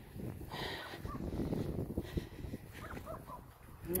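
Footsteps and phone-handling rustle while walking over dry grass and ground, with a few short faint animal chirps about a second in and again near the end.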